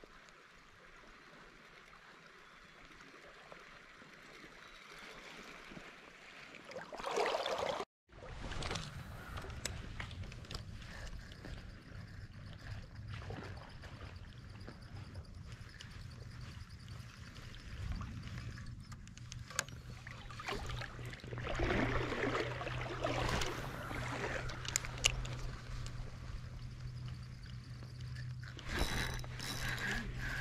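Stream water running and gurgling, with handling noise and wind on the microphone of a head-worn camera. The sound drops out briefly about eight seconds in, and comes back with a steady low rumble under it.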